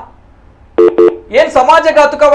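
Speech only: a man talking, with a pause of most of a second, two short clipped syllables, then his talk resumes.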